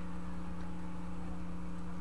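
Steady low electrical hum with a faint hiss: the background noise of the recording, with no distinct sound standing out.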